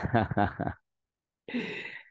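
A man laughing: a quick run of short laughs, then a breathy, sigh-like laugh near the end.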